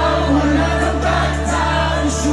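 Live electronic dance music played loud over a club sound system, recorded from the crowd: a long held bass note under a sung melody.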